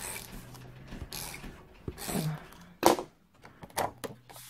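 Short rasping strokes of a tape runner laying adhesive on cardstock paper, followed near the end by two sharp knocks, the first the loudest sound.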